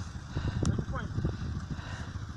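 A quad bike's engine runs low and steady while the bike sits stuck in mud, with men's low voices over it as they heave the quad out.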